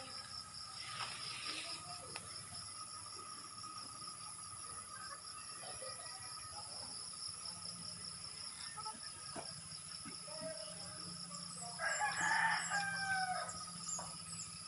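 A rooster crowing once near the end, over a quiet steady background with a few faint ticks.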